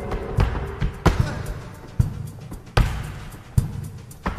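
Flamenco dancer's shoes stamping on a wooden dance board: about five loud, sharp, irregularly spaced strikes over accompanying music.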